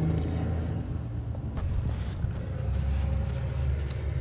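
Steady low rumble of a Jeep Wrangler YJ's engine idling, heard from inside the cab, with a couple of faint clicks.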